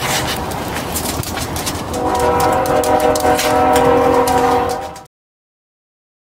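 Rustling and handling noise, then a steady horn sounding a chord of several tones for about three seconds, growing louder before it cuts off abruptly.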